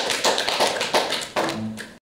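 A small audience clapping, a run of separate sharp claps several a second.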